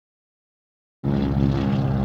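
Silence for about a second, then a loud, steady low drone cuts in suddenly, a hum made of many even, unchanging tones.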